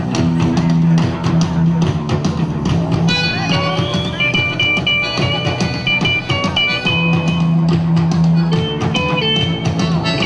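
A live rock band plays an instrumental passage on guitars, bass and drums. About three seconds in, a high lead melody joins above the band.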